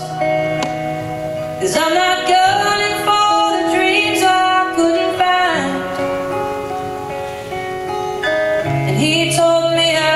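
A slow song played live on two acoustic guitars, with women's voices singing over them.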